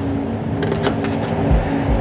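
Steady rushing airflow noise of an airliner gliding without engines, under a sustained low music drone, with two deep low thuds about one and a half seconds in.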